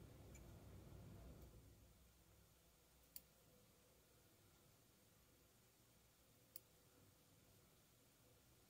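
Near silence broken by two faint, sharp clicks about three seconds apart: small eyebrow scissors snipping brow hairs during a trim.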